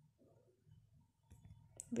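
Near silence, then a few faint short clicks from about a second and a half in.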